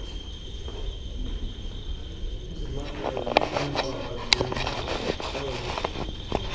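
Radiation instruments: Geiger counters clicking irregularly over a steady high electronic tone. About three seconds in the clicks turn much denser, with two sharp louder clicks.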